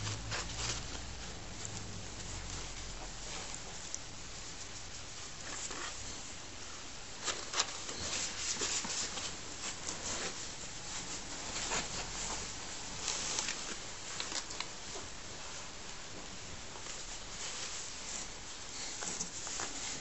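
Rustling and light scratching of fabric and cardboard as a hand plays with a ferret hidden in a red nylon play tent inside a cardboard box, with a busier burst of scrabbling from about seven to fifteen seconds in.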